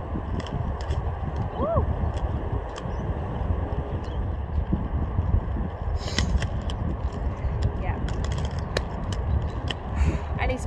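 Quad roller skate wheels rolling on a hard outdoor court surface, a steady low rumble with scattered light clicks.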